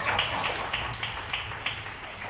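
Hand clapping, soft and regular, about three claps a second.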